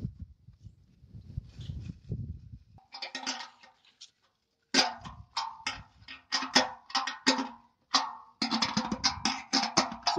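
A socket wrench tightens the nuts on a satellite dish's metal mounting bracket: a run of sharp metal clicks starting about halfway through, the dish ringing faintly under them, with the clicks coming faster near the end. A low handling rumble comes before the clicks.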